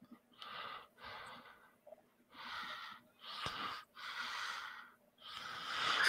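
A person breathing audibly close to a microphone: a series of about six short, faint breaths, each about half a second long.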